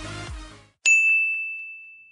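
A single bright, bell-like ding struck just under a second in, ringing down over about a second and a half, like a logo-sting sound effect. Before it, electronic background music with a steady beat fades out.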